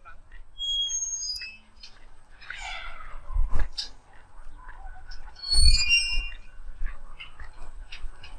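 Birds calling: short, high-pitched chirps about a second in, and a louder cluster of calls near six seconds in. Low rumbles of wind on the microphone come under them.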